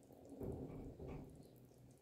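A pot simmering on a stove: faint small pops and ticks of bubbles under a foamy, scummy surface. A soft low rumble swells up twice, about half a second in and again about a second in.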